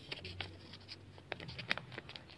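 Origami paper being folded and handled, with a scatter of short, sharp paper crackles and creases, the loudest about three-quarters of the way through.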